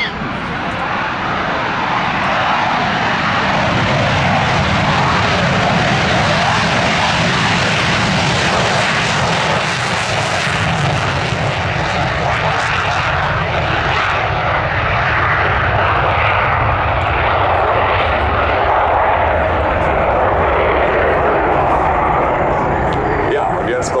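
Saab JAS 39C Gripen's single Volvo RM12 turbofan at full power during the takeoff roll and climb-out. The loud, steady jet noise builds over the first few seconds and then holds.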